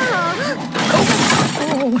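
Cartoon crash sound effect: a loud shattering, breaking crash about a second in, lasting under a second, following a brief cry from an animated character, with music beneath.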